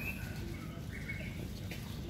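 Steady outdoor background hum with a couple of faint, brief bird chirps, one at the start and one about a second in.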